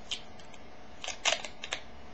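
Small clicks and crinkles from handling a plastic antiperspirant container and its peeled foil seal: one click near the start, then a quick cluster of clicks in the second half.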